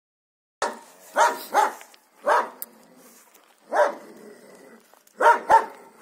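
Siberian huskies barking during rough play: about six short pitched barks, starting after a brief silence, two of them in quick pairs.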